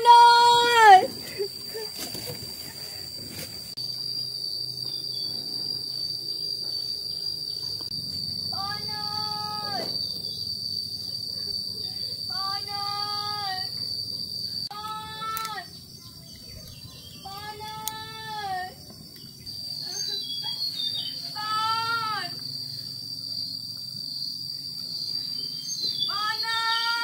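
A woman calling out with hands cupped around her mouth: one loud, long drawn-out call right at the start, then five fainter calls of about a second each, a few seconds apart. A steady high insect buzz, like crickets, runs underneath.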